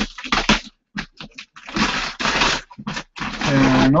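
Paper wrapping being torn and pulled off a large cardboard shoe box, crackling and ripping in several bursts with a few sharp clicks, the longest rip about halfway in.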